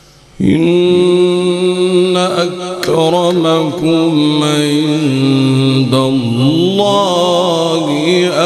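A man's voice in melodic Quran recitation (tilawat), heard through a microphone: after a brief pause it begins about half a second in and carries one long, drawn-out line with held notes and ornamented turns of pitch.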